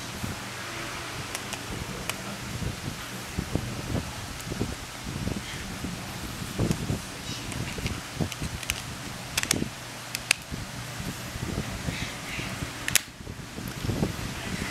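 A smartphone being reassembled by hand: the battery goes back in and the thin plastic snap-fit back cover is pressed on, giving a run of small clicks and taps as the clips seat. A few sharper clicks come after about nine seconds and one more near the end.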